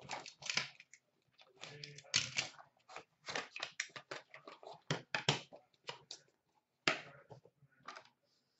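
Hard plastic graded-card cases and small card boxes handled in a plastic bin, giving irregular clicks, knocks and clacks as they are picked out and set down.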